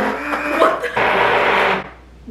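Corded electric stick blender running in cake batter in a stainless steel bowl: a steady whirring that cuts off shortly before the end.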